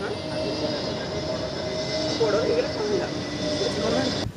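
Passenger jet airliner flying low overhead: a steady engine noise with a constant whine running through it.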